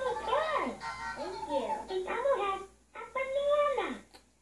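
A recorded song with a singing voice, a melody gliding up and down, that breaks off briefly near three seconds and then stops suddenly at the end.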